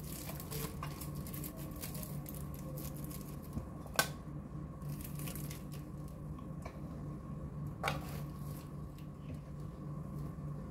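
Thin plastic ice candy bags rustling and crinkling as they are pulled apart and opened by hand, with a sharp click about four seconds in and a smaller one near eight seconds. A low steady hum runs underneath.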